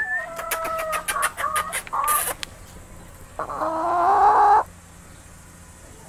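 Hens clucking: a quick run of short pitched clucks over the first two seconds or so, then one longer call rising in pitch about three and a half seconds in that cuts off sharply, the loudest sound here.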